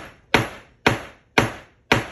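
A mallet striking a handled leather cutting die set on skirting leather: four sharp blows about half a second apart, each trailing off quickly. The die is sharp, but the blows are not driving it through the thick skirting leather.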